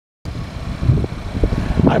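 Low, uneven rumble of wind buffeting the microphone outdoors, surging a few times. A man says "Hi" at the very end.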